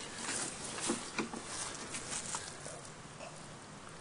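Rustling and handling noise with scattered light clicks and taps, busiest in the first couple of seconds, then dying down to a faint hiss.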